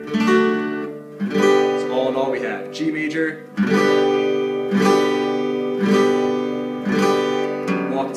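Acoustic guitar played as a chord progression: strummed chords, a short walk-up of single bass notes, then four even strums of a D major chord at about one a second, each left ringing.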